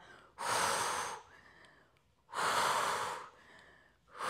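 A woman's forceful exhales through the mouth, two of them about two seconds apart and each about a second long. This is Pilates breathing, with each exhale timed to a core contraction as the legs switch.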